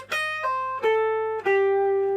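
Electric guitar (Trent Model One, detuned, through a Vox AC30 amp) playing single notes of a major-pentatonic lead lick on the top string: four notes stepping down in pitch, the last one held and ringing.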